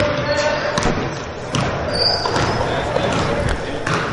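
Basketball being dribbled on a hardwood gym floor, a few bounces ringing in a large echoing hall, under a low murmur of background voices.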